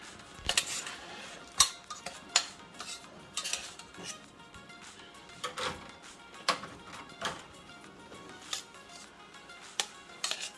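Metal tongs clicking and clinking against a steel saucepan and a wire oven rack while chicken pieces are dipped in sauce and set back down: about nine sharp, irregularly spaced clicks.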